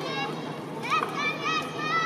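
High-pitched voices calling out in drawn-out, wavering shouts over a steady murmur of an outdoor crowd, one call near the start and longer ones from about a second in.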